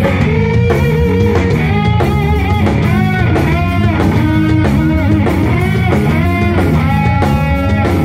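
Live rock band playing loud: an electric guitar lead with bent, wavering notes over bass and a drum kit.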